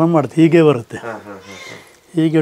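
A man speaking for about the first second, then a quieter pause with low background sounds.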